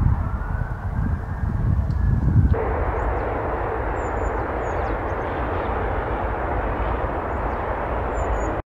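Outdoor ambience: an uneven low rumble with a faint, slightly rising tone for about the first two and a half seconds. Then, after a sudden change, a steady rushing noise with a few faint, short, high bird-like chirps.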